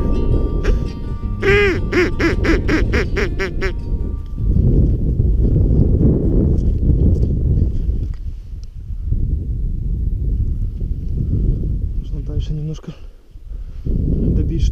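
A quick run of about eight duck quacks, some four a second, a couple of seconds in, over the last of a music track; then steady wind rumble on the microphone, with a short burst of quacking again near the end.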